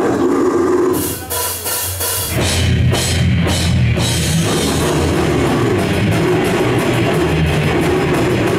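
Heavy metal band playing live at high volume: a held tone opens, a few cymbal crashes follow, and about two seconds in the full band comes in with a fast drum kit and electric guitars.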